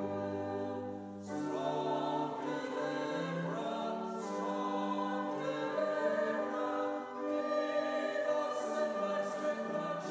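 Church congregation singing a hymn together, accompanied by a pipe organ, with a brief pause for breath between lines about a second in and again near seven seconds.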